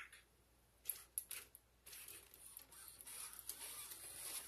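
WowWee RS Media robot starting to walk: a few faint clicks about a second in, then the faint, steady whir of its leg motors and gearboxes from about two seconds in.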